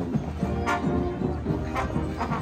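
High school marching band playing on parade, brass carrying the tune, with two sharp percussion strikes about a second apart.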